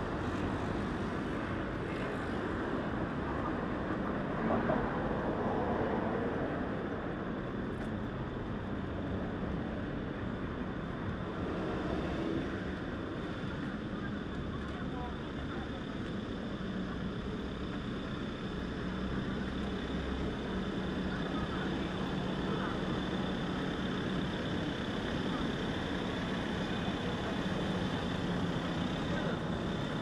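City street ambience: a steady hum of road traffic mixed with the voices of passers-by talking.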